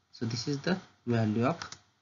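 Speech: a man's voice talking in two short phrases.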